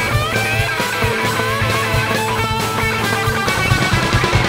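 Rock song in an instrumental passage: electric guitar lines over a steady drum beat, with no singing.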